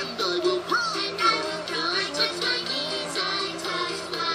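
Song from a children's cartoon on television: singing over a musical backing.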